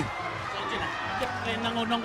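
Rugby ground crowd ambience: spectators' voices murmuring from the stands, with faint music and a steady held tone underneath.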